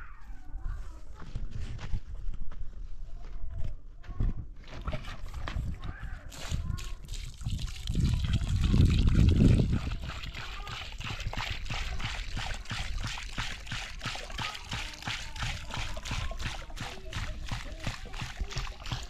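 Water pouring from a plastic jerrycan into a hollow in a dry sand-and-cement mound, a steady splashing trickle through the second half as the mortar mix is wetted. Before it, scattered dull knocks of a shovel working the pile, then a loud low rumble just before the pour.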